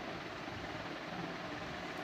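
Steady background noise with no distinct events: an even hiss and hum of room tone picked up by the microphone.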